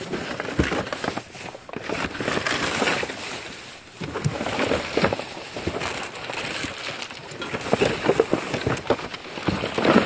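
Plastic bags and cardboard boxes rustling and crinkling as hands dig through trash, with irregular crackles and small knocks.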